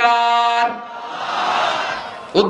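A man's amplified voice held on one steady note for about half a second, then a rush of noise that swells and fades.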